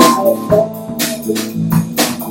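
Live band playing: a drum kit hitting about twice a second under sustained keyboard chords, with electric guitar, bass guitar and harmonica.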